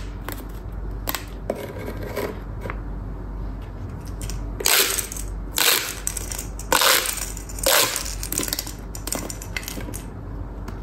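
Corrugated plastic pop tubes being stretched and bent, crackling and popping as their ridges snap open and shut. There are small clicks at first, then four loud crackles about a second apart in the second half, then smaller clicks again.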